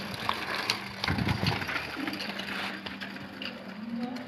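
Small children's bicycle with training wheels rolling over rough concrete, its tyres grinding and the frame and training wheels rattling with scattered clicks, with a louder rumble about a second in.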